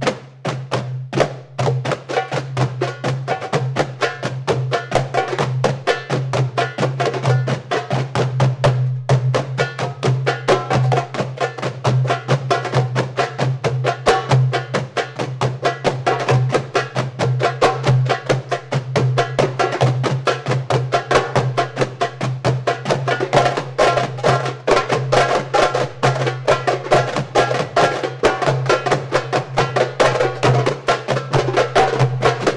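An ensemble of hand drums, metal darbukas and djembes, playing a fast, continuous rhythm. It opens with a few separate strikes, then the dense rhythm runs on from about two seconds in.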